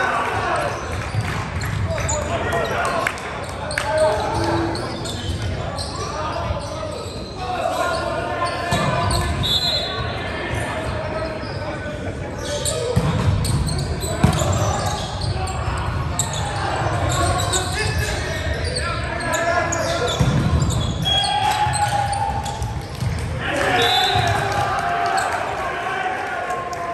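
Volleyball being played in a gymnasium: players' voices and calls carry through the hall, along with thuds of the ball being struck and bouncing on the wooden floor. The sharpest hit comes about 14 seconds in.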